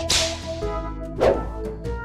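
A cat's fishing-rod wand toy whipping through the air and striking the floor: two sharp swishes, one at the start with a fading hiss and another about a second and a quarter later.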